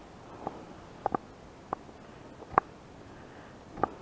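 Footsteps on a sandy, grassy riverbank: short soft knocks at an uneven walking pace, one or two a second.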